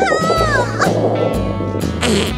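A high, wavering meow-like cry that falls in pitch and fades out under a second in, over background music with a steady bass line. A thinner buzzing tone sounds in the second half.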